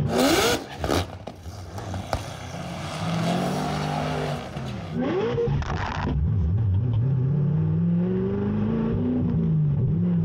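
Supercharged LS9 V8 of a Corvette ZR1, heard from inside the cabin. It is revved in quick blips at the start and again about five seconds in, then climbs steadily in pitch for about three seconds before dropping back near the end.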